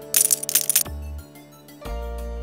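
Background music with held notes and a deep bass pulse. Near the start, a loud crackle of about two-thirds of a second, typical of a clear plastic packaging bag being crinkled in the hand.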